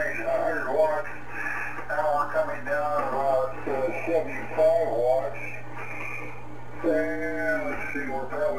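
A man's voice received over single-sideband ham radio, coming from the transceiver: thin, narrow-sounding speech with a steady low hum beneath it.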